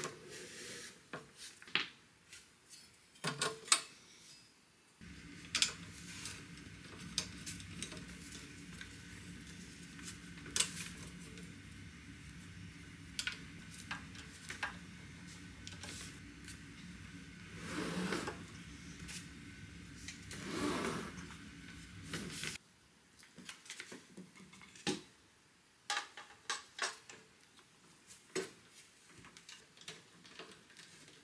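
Scattered metallic clinks, taps and scrapes of a Honda EM400 generator's metal case panels and screws being fitted back together by hand and with a screwdriver. A low steady hum comes in about five seconds in and cuts off suddenly a little past twenty seconds.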